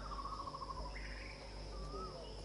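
Outdoor ambience: a steady high-pitched insect drone, with birds calling over it: a falling trilled call in the first second, then short whistled calls near the end. A low hum runs underneath.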